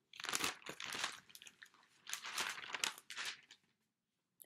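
Sheets of paper being leafed through, rustling and crinkling in two bouts as pages are turned.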